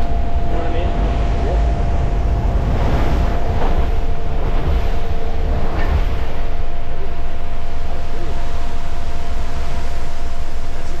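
Engine and propeller noise inside a small aircraft's cabin in flight: a loud, steady rumble with two steady whining tones over it, growing a little louder about six seconds in.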